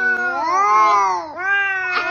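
A cat yowling in long, drawn-out calls that rise and fall in pitch, like 'uwaw': one call lasts through most of the first second and a half, then another begins right after a brief dip.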